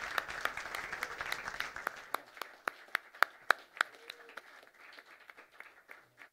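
Small studio audience applauding, the applause dying away to a few scattered, separate claps.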